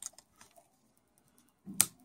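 Small plastic clicks of a laptop's flat ribbon-cable connector being pressed and latched onto the motherboard by fingertips: a click at the start and a few soft ticks, then one sharp click near the end.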